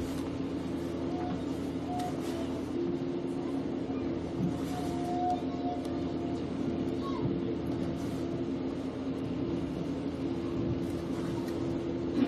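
A steady low mechanical hum holding two constant pitches, with faint distant calls from the field over it.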